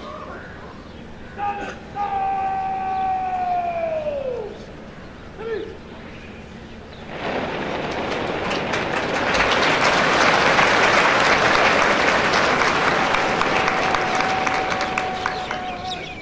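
A long drawn-out shouted parade word of command, held and then falling in pitch, followed by a short call. About seven seconds in, crowd applause starts and builds, with a steady held tone over it near the end.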